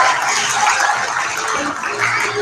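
Show tune with backing music and an ensemble singing.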